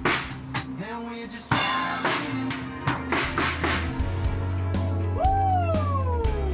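Indie pop band music: drums struck in a steady rhythm over a low bass line, with a high sliding tone that rises and then falls near the end.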